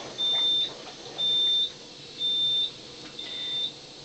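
Enagic LeveLuk SD501 water ionizer beeping: a high electronic beep about half a second long, repeating once a second, four times. The unit sounds this intermittent warning beep while it is making strong acidic water.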